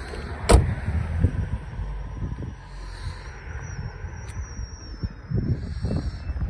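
Ford Focus driver's door shut with a single loud thud about half a second in, followed by an uneven low rumble and a few small knocks.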